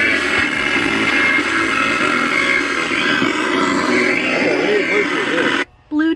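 Loud played-back audio dominated by a voice, cutting off suddenly near the end.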